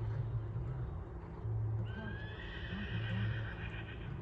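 A horse neighing: one long call that starts with a rise about halfway through and is held to the end.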